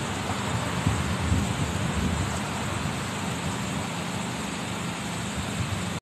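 Road traffic noise from cars passing on a multi-lane road, a steady rush with a low rumble that swells a little about a second or two in.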